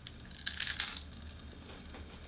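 Crunch of a bite into a crisp wafer cake cone topped with sherbet candy: one short crackly burst about half a second in.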